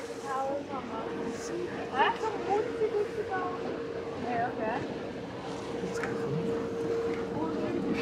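A boat's motor running under way, a steady hum with a thin held tone over the rush of water, with indistinct voices of nearby passengers.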